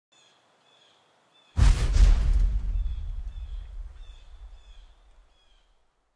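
Birds chirping, then about a second and a half in a sudden loud boom whose deep rumble fades away over about four seconds: the sound effect of a logo intro.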